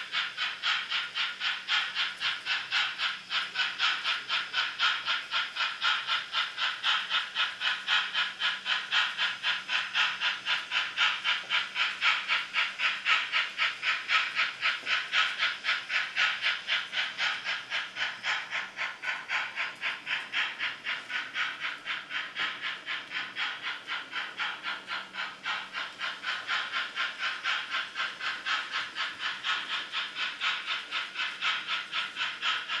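Märklin H0 model steam locomotive's sound decoder playing a steady, rhythmic steam chuff through its small built-in speaker, about three beats a second, as the locomotive runs with its train.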